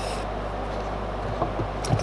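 Steady low electrical hum, with a brief faint rub right at the start as the filling knife is wiped clean of epoxy filler.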